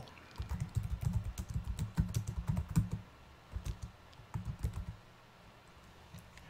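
Typing on a computer keyboard: a quick run of keystrokes lasting about two and a half seconds, then two short bursts of keys.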